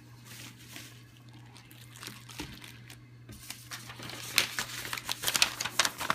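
Clear plastic wrapping around coins crinkling as hands handle and unwrap it. The crackling is light at first and gets denser and louder in the last two seconds.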